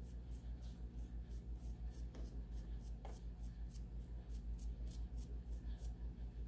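Small chip brush scrubbing gloss Mod Podge onto a rough rock, bristles scratching on the stone in quick regular strokes, about four a second.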